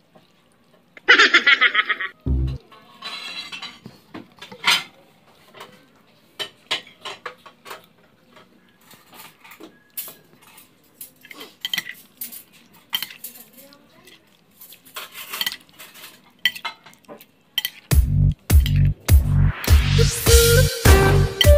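Raw fish pieces being mixed by hand in a plate of souring liquid, with scattered clinks of a metal spoon against the plate and small wet squelches, after a short loud burst about a second in. Music with a steady beat comes in near the end.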